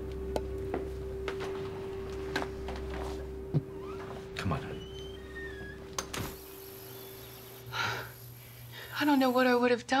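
A front door being handled and shut: a series of sharp clicks and thunks over a steady hum, with a few faint bird chirps in the middle. A voice comes in near the end.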